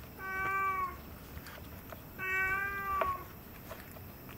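A cat meowing twice: two steady-pitched meows of about a second each, a second apart, each dipping a little at the end.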